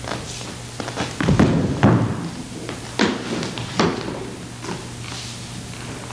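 A string of thuds and knocks from a physical scuffle on a stage, with one performer ending up on the floor. There are about half a dozen impacts, the heaviest close together about one and a half to two seconds in, then single knocks near three and four seconds, all over a steady low electrical hum.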